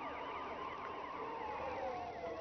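Electronic swooshing sound effect: quick repeated rising-and-falling chirps over a single tone that slowly falls in pitch, bridging the studio into the music video.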